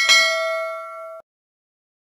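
Notification-bell 'ding' sound effect, struck once and ringing for about a second before it cuts off suddenly.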